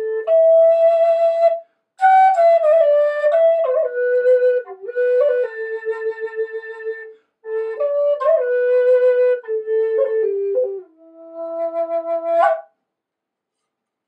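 Native American style flute of Alaskan yellow cedar, keyed to E minor, played as a slow melody: held notes joined by slides, in four phrases with short breath pauses between them. The last phrase settles on the low fundamental E and ends with a quick upward flick.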